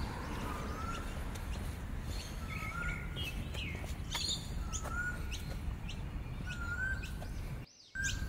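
Birds chirping and calling, with a short rising whistle repeated about every two seconds and scattered thin high chirps over a steady low background rumble. The sound cuts off abruptly near the end.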